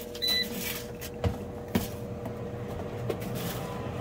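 Handling noise as a plastic food dehydrator is picked up and set down on a table: a brief rustle near the start, then a couple of sharp knocks a little over a second in, over a steady low hum.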